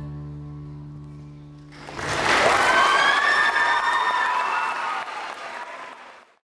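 The song's last held chord dies away, then about two seconds in an audience bursts into applause with cheering, which tails off near the end.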